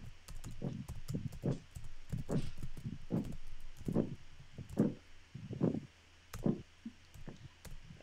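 Typing on a computer keyboard: irregular keystroke clicks and knocks, a few a second, over a low steady hum.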